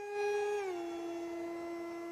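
Distant electric RC park jet in flight: a GepRC GR2306 2750 kv brushless motor on 4S spinning a 6x3 propeller, heard as a steady high whine rich in overtones. Its pitch drops a little about half a second in, then holds.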